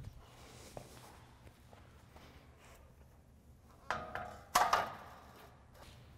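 Two metal clanks with a short ringing after each, about four seconds in and half a second later, as metal parts of the frame knock together. Before them there is only faint room noise.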